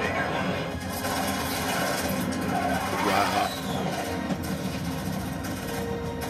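An action movie's soundtrack playing from a television: steady background music with snatches of voices.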